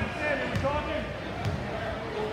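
Crowd voices chattering in a gymnasium, with a basketball bouncing on the hardwood floor as a player dribbles at the free-throw line, a few thumps about a second apart.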